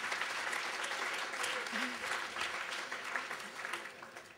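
Audience applauding, the clapping dense and steady and then dying away near the end.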